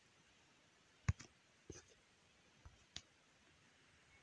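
A few light clicks and taps, about five within two seconds, the first about a second in the loudest, from fingers handling a smartphone to pull down its notification shade and stop a screen recording.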